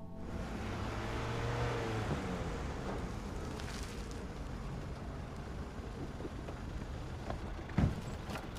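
A car arriving, with a steady rush of engine and road noise, and a short loud thump just before the end.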